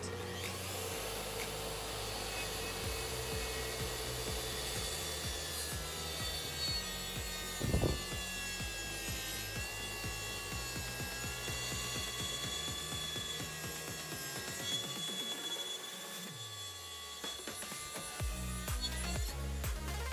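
Makita SP6000J plunge track saw running along its guide rail, cutting through a hardwood board, with a steady high motor whine. Background music plays underneath.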